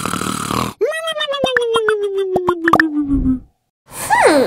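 A long groan-like vocal sound gliding steadily down in pitch for about two and a half seconds, with sharp clicks running through it.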